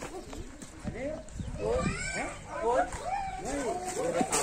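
Indistinct voices of several people talking, growing more animated about halfway through.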